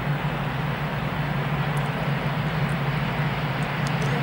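ÖBB class 1116 Taurus electric locomotive hauling a train of tank wagons as it approaches: a steady low hum over an even running rumble.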